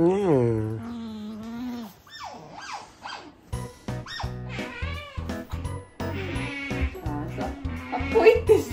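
Asian small-clawed otter making repeated short, high-pitched squeaking calls that rise and fall, the begging call of an otter asking for food, over background music.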